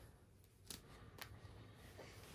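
Near silence: faint room tone with two light clicks, about half a second apart, near the middle.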